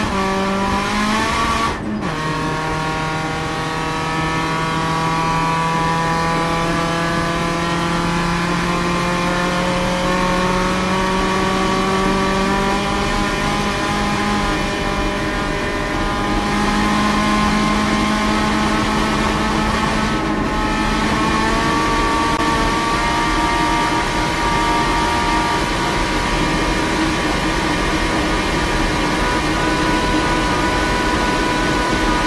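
Skoda Octavia vRS land-speed car's turbocharged engine under full load, heard inside the cabin. Its pitch rises, breaks for a moment and drops at an upshift about two seconds in, then climbs slowly as the car gathers speed, with another short break near twenty seconds.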